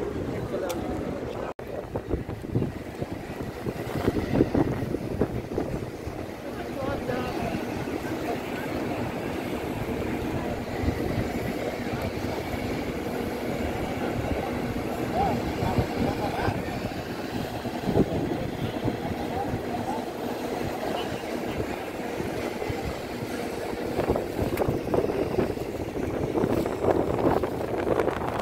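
Outdoor crowd ambience: a steady low rumble of wind buffeting the phone's microphone, with faint voices of people nearby in the background and a faint steady hum.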